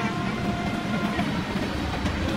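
Steady low rumble with a faint steady whine above it, like a passing motor vehicle.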